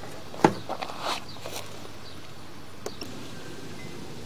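Steady faint hiss with a few brief clicks and knocks: one about half a second in, a couple more around one to one and a half seconds, and a sharp tick near three seconds.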